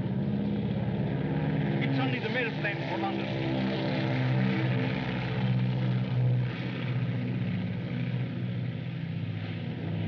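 Propeller aircraft engines droning steadily overhead, with brief excited voices around two to three seconds in.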